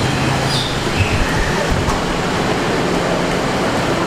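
Steady low rumble and drone of idling bus engines at a bus station.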